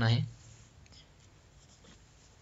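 A man's voice ending a phrase, then a few faint clicks of a computer keyboard, the last just before the file is saved, over low room noise.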